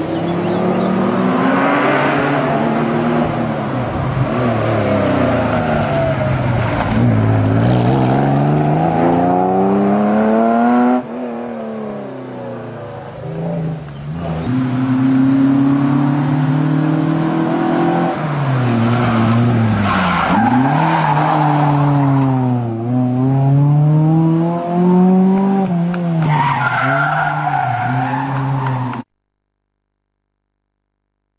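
Historic rally cars driving hard through a hairpin one after another, their engines revving up and dropping again and again through the gear changes. There is a sudden break about a third of the way in as a second car comes up, and the sound cuts off abruptly near the end.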